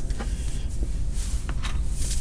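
A few faint clicks and rustles of a fog-light wiring harness being handled, over a steady low rumble.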